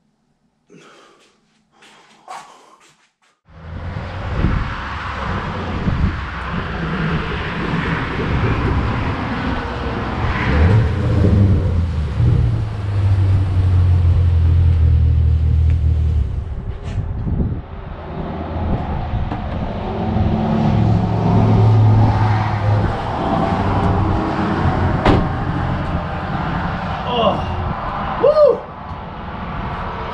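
A few seconds of faint, heavy breathing, then a loud, uneven rumble of wind buffeting the microphone outdoors, over the hum of a road.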